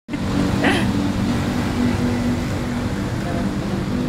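A motor vehicle's engine running steadily close by, a low even hum, with a brief higher sound just under a second in.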